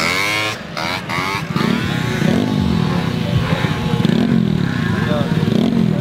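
Small 50cc moped engines running close by, revved up and down with the pitch rising and falling in swells about once a second.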